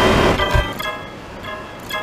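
Effect-processed logo jingle: a loud, dense, distorted wash of sound that drops away about half a second in, giving way to a quieter run of short, bright electronic notes.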